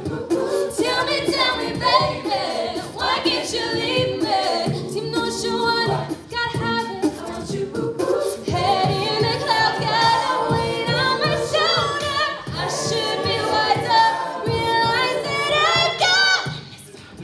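A mixed-voice a cappella group singing a pop song live, a female soloist leading at the microphone over the group's sung backing.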